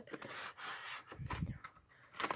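Hands rubbing and rustling a cardboard trading-card hobby box and its foil packs as a pack is pulled out, with a few faint clicks and a soft low thump about halfway through.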